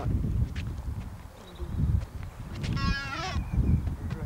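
Wind rumbling on the camcorder microphone outdoors. A short, high-pitched call with a bleat-like sound comes about three seconds in.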